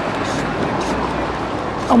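Steady outdoor city background noise: an even hum of traffic.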